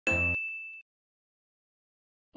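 A single ding sound effect: a sharp hit with a high ringing tone that fades away within about a second.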